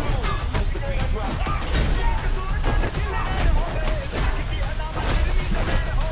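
Action-trailer music with a heavy bass pulse, under a rapid run of hits and crashes from a close-quarters fight, with short wordless shouts.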